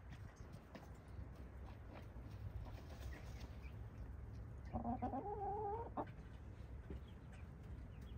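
A Buff Orpington hen gives one drawn-out, fairly even-pitched call lasting about a second, midway through. It sounds over faint, scattered scratching and rustling of the hens dust bathing in the dirt.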